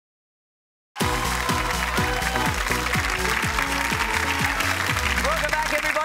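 Silence for about the first second, then game-show music with a steady beat starts abruptly, over studio audience applause. A man's voice comes in near the end.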